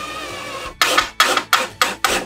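Cordless drill boring into plywood: the motor runs steadily with the bit cutting for under a second, then comes in about six short bursts, roughly three a second.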